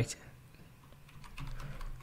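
A few faint keystrokes on a computer keyboard as a terminal command is typed.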